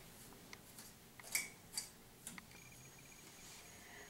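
Faint strokes of a comb through a synthetic wig's fibres: a few soft, short brushing sounds in the first two and a half seconds, the loudest about one and a half seconds in.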